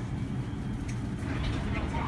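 Inside the cabin of a Busan–Gimhae light rail train: a steady low rumble from the train, with indistinct voices near the end.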